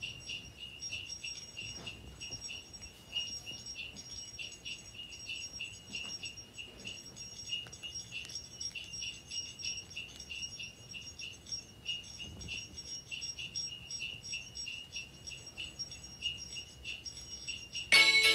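Crickets chirping: a steady, rapidly pulsing high-pitched trill, fairly faint.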